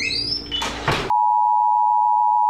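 A laugh and a short high squeak, then, about a second in, a loud steady 1 kHz test tone starts abruptly. It is the single-pitch beep that goes with a television colour-bars test card.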